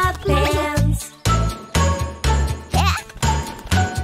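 Upbeat children's song music with a steady bass beat and bright bell-like dings and jingles.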